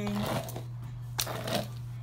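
A comb raking through a bundle of human-hair extensions, giving three short sharp clicks, the loudest a little after a second in, over a steady low hum.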